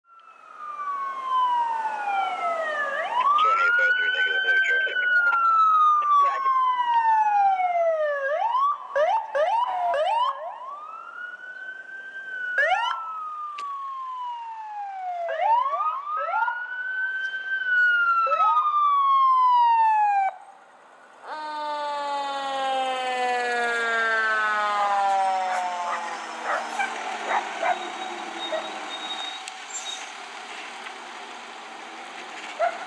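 Electronic wail siren of an LAFD rescue ambulance rising and falling in long sweeps about every three seconds, with a few quick short sweeps among them. About twenty seconds in, a deeper siren from a fire engine takes over, full of overtones and slowly falling in pitch.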